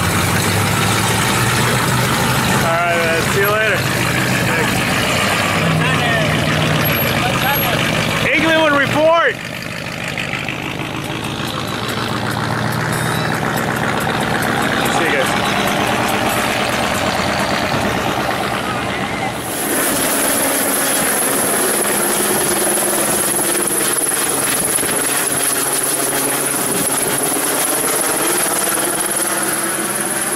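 Classic V8-era American cars driving slowly past one after another, engines running at low speed, with people's voices around them. About two-thirds of the way in, the engine rumble gives way to a steadier sound with a thin high whine.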